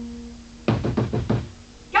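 A quick run of about five knocks, a little over half a second long, starting about two-thirds of a second in, over soft background music holding a steady note.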